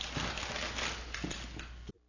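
Wrapping paper rustling and crackling as a gift is unwrapped, over a steady low hum. The sound cuts out suddenly near the end.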